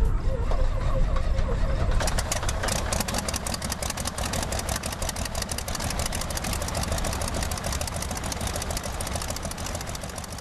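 The piston engine of a vintage light airplane running at low speed. A rapid, even beat of firing pulses sets in about two seconds in.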